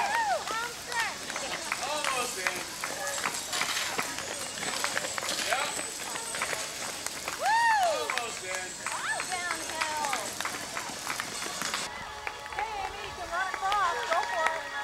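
Runners' footfalls on pavement under scattered high-pitched shouts and whoops of encouragement from spectators.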